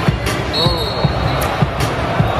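Live arena sound at an NBA basketball game: crowd noise and music, with repeated low thuds. A steady high, whistle-like tone starts about half a second in and lasts about a second.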